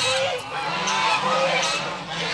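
A flock of white domestic geese honking, many short calls overlapping one another.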